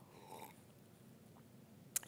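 A faint sip of water drunk from a mug near the start, then near silence.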